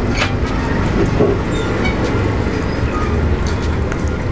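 A steady low rumble, with a few faint clicks over it.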